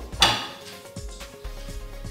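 A metal frying pan set down on a gas stove's grate: a clank about a quarter second in, then a few lighter knocks of cookware.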